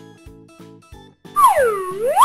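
Children's background music with short repeated notes. About a second and a half in, a loud cartoon sound effect swoops down in pitch and back up again over about a second.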